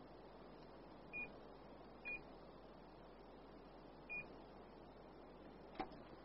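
Three short, high electronic beeps, all at the same pitch, about a second in, at two seconds and at four seconds, over faint room hiss. A sharp click comes near the end.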